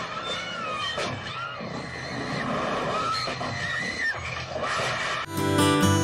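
Film soundtrack of a chaotic crowd scene, with high wavering cries over general commotion. Strummed acoustic guitar music begins about five seconds in.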